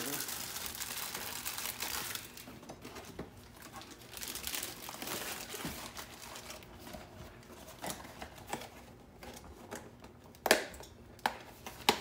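Pancakes frying in a nonstick pan with a faint crackling sizzle and scattered small clicks, after a louder rustling in the first couple of seconds. Two sharp knocks near the end as the spatula strikes the pan.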